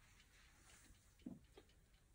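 Near silence: room tone, with one faint, brief knock a little past a second in.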